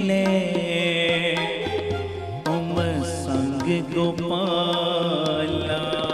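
Sikh shabad kirtan: a sung devotional line with melodic turns over a steady harmonium, with tabla strokes.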